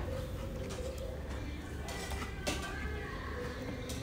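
A mug pressed and worked into grilled tomatoes in a bowl, mashing them by hand for chirmol, with a couple of light knocks, one about two and a half seconds in and one near the end, over faint background voices.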